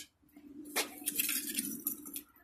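A steady low hum with a few light metallic clinks over it.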